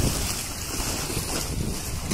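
Wind buffeting the microphone over the steady wash of sea water, with a rough, fluctuating low rumble and a high hiss throughout.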